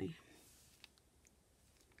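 Near silence with a few faint clicks of paper cutouts being shifted by hand on a collage page, the clearest a short tick a little under a second in.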